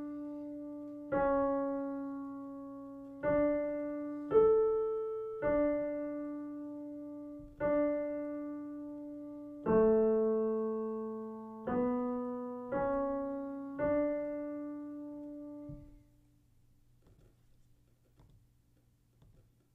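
Piano playing a slow single-line dictation melody in D major, one note at a time, in quarter, half and whole notes. It ends on a held D that dies away about sixteen seconds in.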